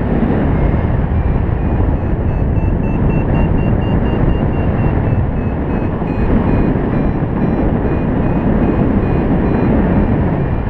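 Loud wind rushing over the microphone of a paraglider in flight, with a flight variometer beeping about three times a second. The beeps rise in pitch over the first few seconds, dip and climb again: the vario's climb tone, the sign of the glider going up in lift.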